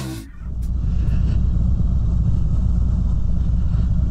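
A 2017 Harley-Davidson Road King's V-twin engine running steadily at low speed with an even low note, on the road again after a blown head gasket was repaired.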